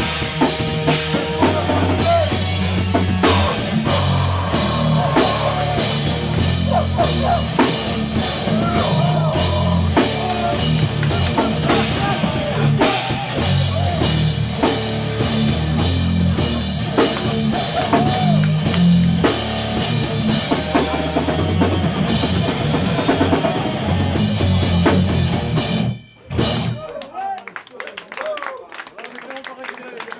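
Heavy hardcore band playing live: distorted guitar and bass, pounding drum kit and shouted vocals. The song stops abruptly near the end.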